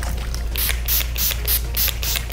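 Urban Decay makeup setting spray misted from a pump bottle onto a face: a quick run of short spritzes, about four a second, starting about half a second in.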